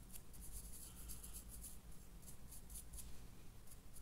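Paintbrush dry-brushing over the sculpted tile roof of a miniature tower: faint, quick scratchy strokes of the bristles, about four or five a second, unevenly spaced.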